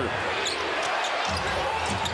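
A basketball being dribbled on a hardwood court, with low thumps near the start and again after the middle, over the steady murmur of an arena crowd.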